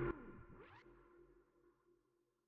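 The song's backing music stops abruptly just after the start, leaving a faint fading tail with a short upward sweep under a second in that dies away.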